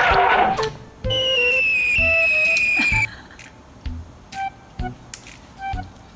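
Comedy whistle sound effect: after a loud jumble of music cuts off in the first second, a single whistle tone slides slowly downward for about two seconds, followed by a few soft low thumps and short blips.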